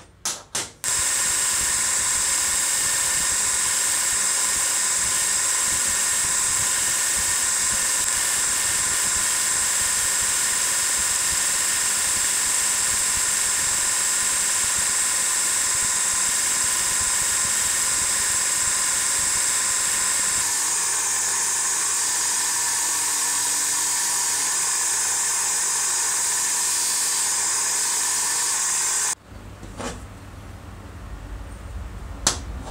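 Old bench-mounted motor running a spinning abrasive wheel, with a steady whine and hiss as a small steel part is held against it. The sound changes slightly about twenty seconds in and cuts off abruptly near the end.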